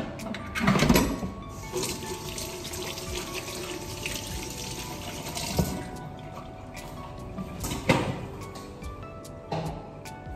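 A kitchen tap running for several seconds and stopping a little after halfway through, with a sharp knock about a second in and another near the end. Background music plays throughout.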